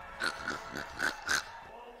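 A man laughing in five quick, breathy bursts over about a second and a half, then stopping.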